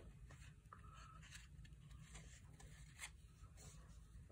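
Near silence, with faint soft rustles and clicks of cardboard trading cards being slid across one another in the hand.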